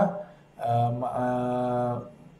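A man's voice holding one long, level vowel, a drawn-out hesitation sound between phrases, starting about half a second in.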